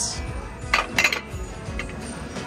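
China plates and bowls clinking against each other as they are handled on a stack, a few sharp clinks about a second in, over background music.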